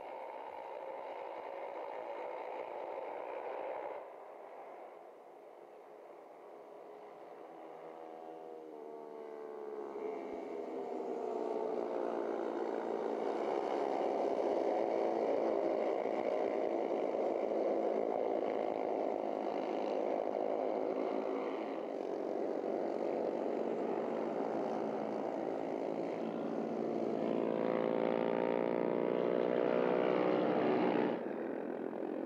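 Several Honda Junior Cup race motorcycles running hard together, their engine notes overlapping and wavering in pitch as the pack goes by. The sound drops back about four seconds in, then builds over the next several seconds and stays loud.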